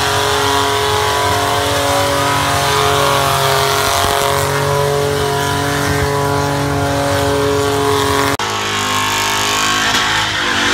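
Burnout car's engine held at high, steady revs while its rear tyres spin on the pad. About two seconds before the end it cuts abruptly to another car's engine at a lower pitch.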